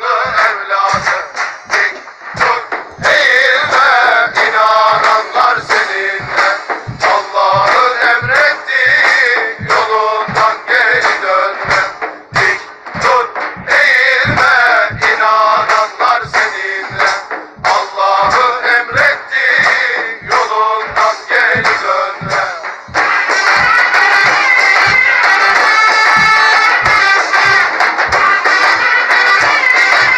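Music with a steady drumbeat and a singing voice; about 23 s in the singing stops and a louder, continuous instrumental passage takes over.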